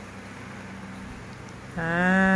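Quiet steady room hum, then, about three-quarters of the way through, a person's voice begins a long, level, drawn-out vocal sound held at one pitch.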